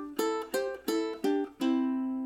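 Ukulele picked one note at a time, playing a short melody from the pentatonic scale: five notes about a third of a second apart, the last one left ringing.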